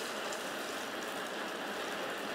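Hot steel sizzling and crackling in a can of quench oil during a hardening quench, over the steady hiss of a propane torch burner firing a cinder-block forge.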